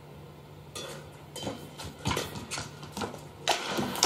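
Badminton rally: racket strings striking the shuttlecock, about five sharp hits spaced under a second apart.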